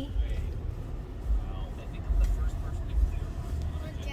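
Steady low rumble of a car's road and engine noise heard from inside the cabin while driving in city traffic.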